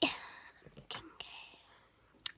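A girl's breathy whisper with a couple of small mouth clicks, loudest at the start and fading away.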